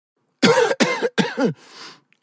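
A person coughing three times in quick succession, then drawing a breath.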